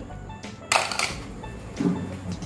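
Background music, with one short sharp noise lasting under half a second a little under a second in.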